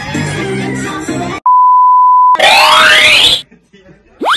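Music that stops about a second and a half in, followed by a loud, steady electronic beep lasting about a second, then a loud noisy sweep rising in pitch for about a second, like an edited-in transition effect.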